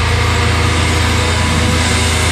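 Deathcore band playing, with no vocals: dense, heavily distorted guitars over drums, with a fast, even low pulse.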